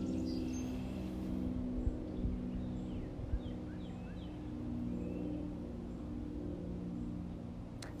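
A low, steady engine hum from distant machinery, drifting slightly in pitch, with a few faint bird chirps about two to four seconds in and a few soft knocks.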